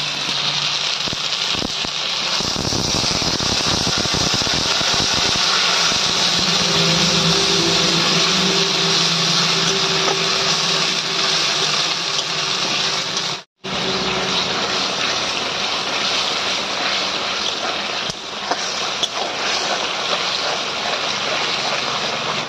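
Ground spice paste frying in mustard oil in a steel kadai, a steady sizzle throughout as it is stirred with a spatula. Water rinsed in from the spice plate near the start sets it spitting harder. The masala is being fried until the oil separates.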